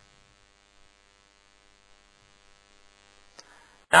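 Faint, steady electrical mains hum with a stack of overtones, picked up in the recording chain during a pause in speech. There is a faint click near the end.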